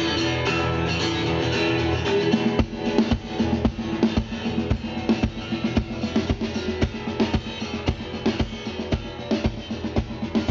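Live band playing a song's intro: a strummed acoustic guitar, then about two and a half seconds in the drum kit and bass guitar come in with a steady beat of about three strikes a second.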